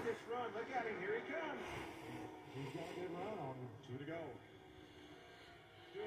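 Faint race commentary from a television broadcast of a NASCAR race, speech only, dropping to near silence about four and a half seconds in.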